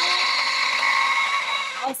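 Small electric grinder with a glass jar running steadily, its motor whining as it grinds walnuts to a coarse powder.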